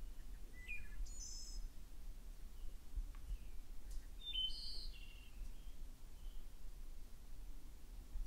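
Birds chirping outdoors: short high calls about half a second and a second in, then a brief cluster of chirps about four seconds in, over a faint low rumble.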